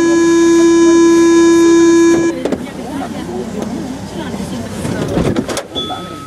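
A Paris Métro train's warning buzzer holds one loud, steady tone, then cuts off abruptly about two seconds in. Quieter cab noise and voices follow.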